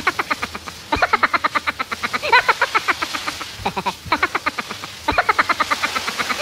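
A man's rapid, stuttering 'oh-oh-oh' cries in quick runs of about eight to ten a second, with short breaks between runs, as cold shower water hits him. The hiss of the shower spray runs under them.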